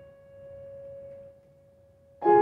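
A single piano note on a Petrof grand piano, held and fading away until it dies into near silence about a second and a half in.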